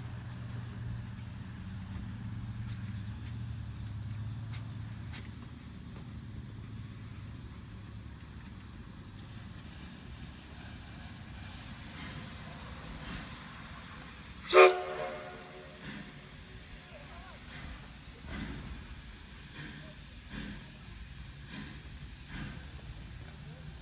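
Black Hills Central Railroad No. 110, a 2-6-6-2T Mallet steam locomotive, standing with a steady low hum. About two-thirds of the way through it gives one short, sharp whistle toot, and faint scattered exhaust beats follow as it creeps forward.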